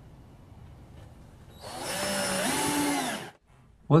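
A cordless drill running into wood for about a second and a half, starting a little more than halfway in; its motor whine steps up in pitch midway, then sinks and cuts off.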